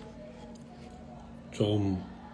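A man's brief voiced sound, a short 'mm' or syllable falling in pitch, near the end; before it only a faint steady hum.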